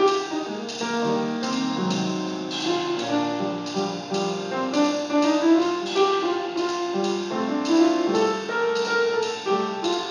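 Live jazz with a grand piano playing a busy line of single notes and chords. A drum kit keeps time behind it, its cymbal struck about twice a second.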